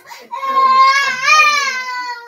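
A young child crying in one long, high wavering wail that starts just after the beginning and swells about halfway through.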